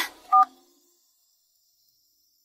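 A single short two-tone mobile phone beep, like a keypad tone, about a third of a second in, marking the end of a phone call; then near silence.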